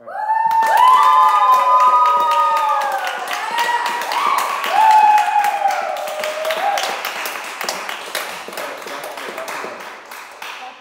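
A few voices whooping and cheering over quick clapping. It breaks out suddenly and dies away over several seconds.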